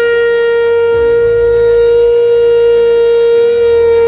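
A conch shell (shankh) blown in one long, loud, steady note, held without a break or change of pitch.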